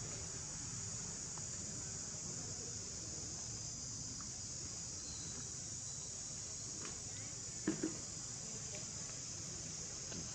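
Steady, high-pitched insect chorus running without a break, with two short, louder sounds close together about three quarters of the way through.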